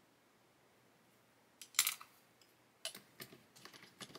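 A few sharp plastic clicks a little under two seconds in, then a run of lighter clicks and taps: a plastic cement bottle being recapped and set back into its plastic bottle holder.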